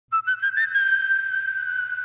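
Whistled tune opening wrestling entrance music: four short notes stepping upward, then one long held note.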